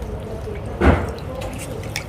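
Water sloshing and dripping as hands scrub husked ears of corn in a metal basin of water, with one louder slosh about a second in.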